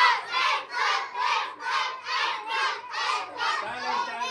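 A group of children shouting together in a rhythmic chant, about two or three shouts a second, trailing off near the end.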